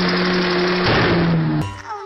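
A small hatchback's engine is held at high, steady revs in a burnout, along with the hiss of tyres spinning. A little under a second in, the steady engine note breaks up. Near the end the sound cuts off abruptly into music with singing.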